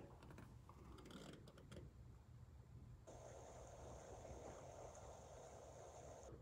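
Near silence: room tone with a few faint clicks a little over a second in, and a faint hiss in the second half.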